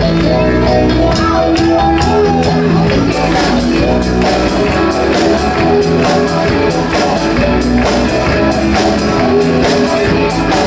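Live rock band playing an instrumental passage on electric guitars, bass and drum kit, loud and steady. The drums pick up about three seconds in, with the cymbals struck harder and more often.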